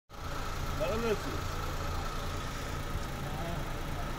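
Daewoo Damas minivan's small three-cylinder engine idling steadily, a low even hum with a faint steady whine above it.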